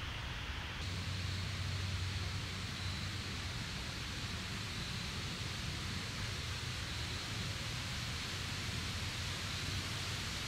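Steady outdoor ambience in woodland: an even hiss with a low rumble beneath, growing a little brighter about a second in, with no distinct events.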